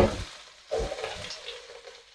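Shredded oyster mushrooms sizzling in hot oil in a non-stick pan, just added. The sizzle comes in two short surges, one at the start and one a little under a second in, each dying down to a faint hiss.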